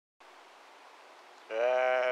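Faint steady hiss, then about one and a half seconds in a voice starts on a long, drawn-out syllable held at one steady pitch.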